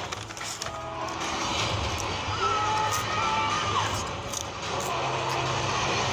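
Movie trailer soundtrack playing over cinema speakers, recorded on a phone: music under a steady low rumble of sound effects.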